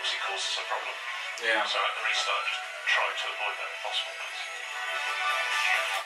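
A Formula 1 team radio clip playing back over a laptop's speakers: a voice on the car-to-pit radio talking over background music. It sounds thin, with no low end.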